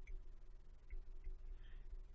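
Faint, light ticks of a stylus tip touching and lifting off a phone's glass screen during handwriting, a few spread across the two seconds, over a low steady background rumble.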